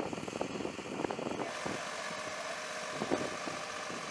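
An engine running steadily with a thin whine. For the first second and a half it is mixed with irregular clattering knocks.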